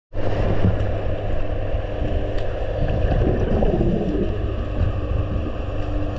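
Underwater noise picked up by a submerged camera: a steady low rumble with hiss, and some wavering gurgles a little past the middle.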